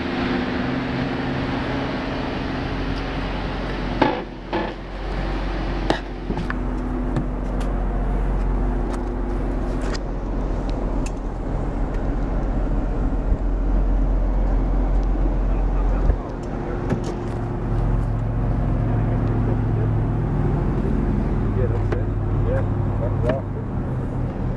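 Dodge Charger's 3.5-litre high-output V6 idling steadily, with a few sharp clicks of handling, one about four seconds in and another about six seconds in.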